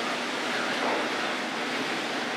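Steady, even hiss of background noise with no distinct tones or knocks: the ambient noise of the factory hall.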